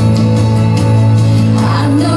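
Live worship song through a church sound system: backing music with a steady held bass note, and women singing into microphones.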